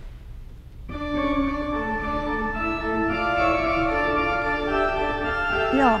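Organ played with held notes that move in steps over sustained chords, starting about a second in after a brief quiet.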